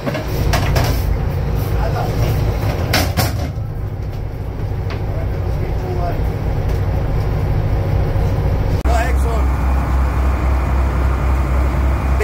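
Boat engine running with a steady low rumble, and a few sharp knocks in the first few seconds. About nine seconds in the engine note switches abruptly to a different, steadier low hum.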